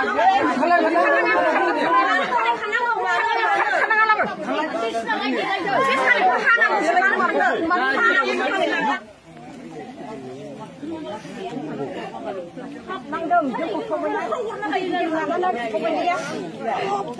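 Several people talking at once, voices overlapping. About nine seconds in the loudness drops suddenly, and quieter chatter goes on and grows again toward the end.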